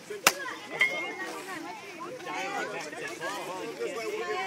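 Several voices of children and adults chattering in the background, with one sharp knock about a quarter of a second in and a brief high tone shortly after.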